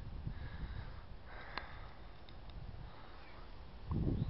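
Faint outdoor background with a low rumble on the microphone from wind or handling as the camera is carried, and a single sharp click about a second and a half in.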